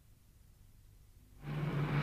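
Near silence for about a second and a half, then a car engine comes in with a steady low drone and hiss, the engine of a Morris Minor on an old film soundtrack.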